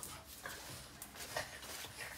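Boston terrier whimpering with excitement as it jumps up in greeting: a few short, high squeaks, mixed with some sharp taps.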